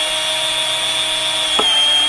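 Cordless drill fitted with a step bit running at full speed, boring a hole through a gloss-black plastic side skirt: a steady high whine with one short tick about one and a half seconds in.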